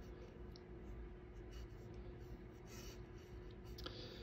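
Faint, scratchy swishes of a paintbrush dragging oil paint across a white painting surface, in short irregular strokes, with a small click near the end.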